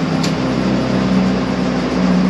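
A steady mechanical hum with a constant low tone and a noisy hiss, with one brief faint click about a quarter second in.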